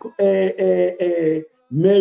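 A man's voice speaking slowly, holding each syllable at an even pitch so the words come out drawn-out, almost chanted.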